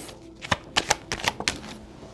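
Tarot cards being pulled from a hand-held deck and laid on the table: a rapid, uneven run of sharp clicks and snaps of card stock, starting about half a second in and stopping a little after a second and a half.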